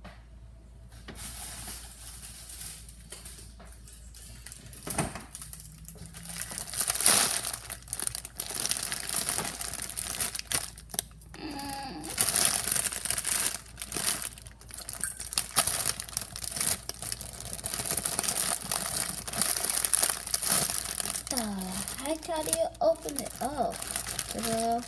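Plastic food packet being handled and crinkled: a continuous crackling rustle that starts about a second in and goes on throughout, with sharper crackles in places.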